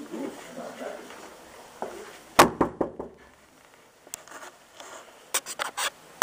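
Sharp knocks and rattles: a quick cluster of four about two and a half seconds in, and another run of four or five near the end, over faint low muffled noise.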